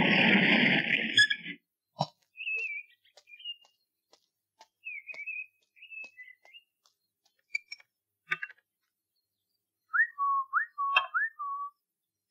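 A loud sustained sound cuts off about a second and a half in. It is followed by sparse faint clicks and short high chirping whistles, with a run of four quick rising whistled notes near the end.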